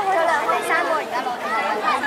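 Several voices talking over one another: spectators' chatter, with no single speaker clear.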